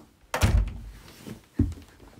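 Two dull, heavy thumps close to the microphone, the first about half a second in and a shorter one about a second later: knocks against the phone as the person settles in front of it.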